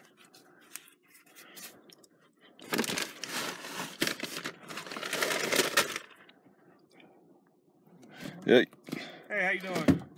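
Rustling and crackling of fabric rubbing against a camera's microphone as the camera is moved and covered, loudest for about three seconds starting a few seconds in. A short word is spoken near the end.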